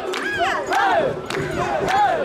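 A large group of mikoshi bearers chanting in rhythm as they carry the shrine palanquin: many voices shouting short rising-and-falling calls, about two a second.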